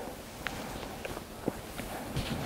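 Low room noise with a few faint taps and soft thumps, about half a second and a second and a half in, from cloth and objects being handled.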